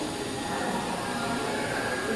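Steady workshop background noise: an even hiss-like hum with no distinct knocks or clicks.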